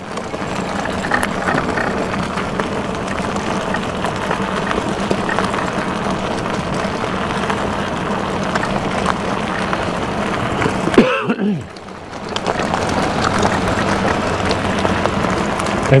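Wind rushing over a helmet-mounted camera's microphone, mixed with tyres rolling over desert gravel, as an e-bike rides along at about 20 miles an hour. The noise drops away briefly about eleven seconds in, then resumes.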